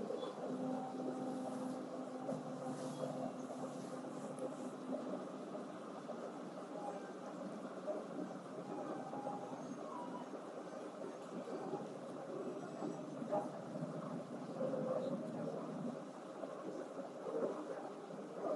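Steady background noise with no speech, and a faint hum during the first few seconds.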